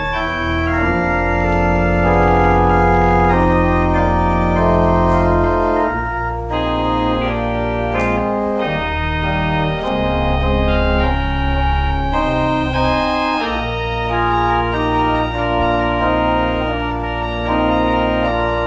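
Organ playing a church prelude: held chords over sustained low bass notes, changing every few seconds.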